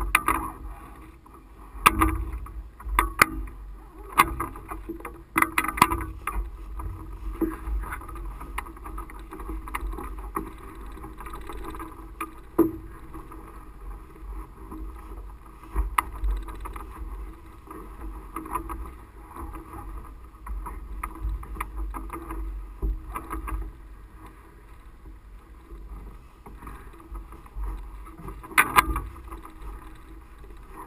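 Low rumble of wind on a camera mounted atop a powered parachute's mast, broken by scattered knocks as the mast is jostled while the parachute is packed at its base. The knocks come several in the first few seconds, then a few more spaced out, with a sharp one near the end.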